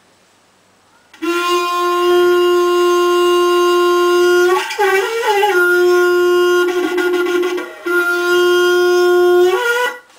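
A plastic watering can blown through its spout like a shofar. About a second in, a loud horn-like note starts and holds steady on one pitch. It breaks into a wavering stretch in the middle, dips briefly once more, and jumps to a higher note at the very end.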